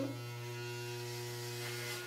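Corded electric hair clippers fitted with a number four guard, running with a steady, even hum.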